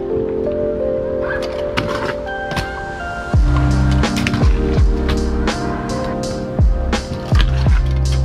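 Background music: melodic tones with sharp percussion. About three seconds in, a heavy, deep bass comes in, sliding down in pitch on each note.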